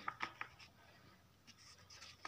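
Pages of a thick textbook being turned by hand: a few quick paper rustles in the first half second, and fainter rustling near the end.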